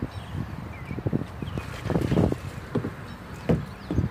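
Wind buffeting a phone microphone, irregular low rumbles with a few knocks, with faint bird chirps in the background.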